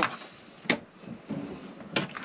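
Two sharp clicks from the metal frame of a fold-down travel seat as it is lowered into a motorhome bench base, one a little under a second in and one near the end.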